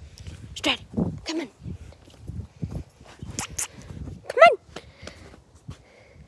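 Alaskan Malamute giving a few short, falling howl-like calls in answer to being spoken to. The loudest call comes about four and a half seconds in. Low rumbling handling noise runs beneath the calls.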